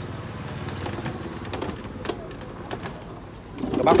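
Pigeons cooing faintly in the background over a low, steady hum.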